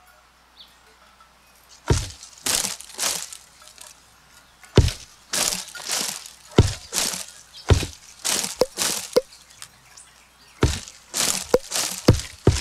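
A tree played by hand as a percussion instrument and recorded close up: branches pulled and struck give deep thuds, with crackly, rustling strokes of twigs and leaves between them. Together they form a slow, loose beat that starts about two seconds in.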